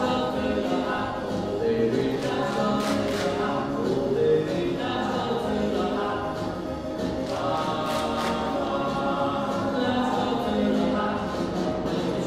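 School choir singing, many voices together holding long notes.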